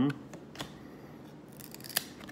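1993 Marvel Masterpiece trading cards being handled and slid through a stack: a soft click about half a second in, a brief sliding hiss near the end, then a sharp card snap just before the end.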